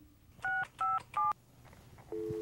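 Telephone keypad dialing: three short touch-tone (DTMF) beeps in quick succession, starting about half a second in, each a pair of tones sounding together.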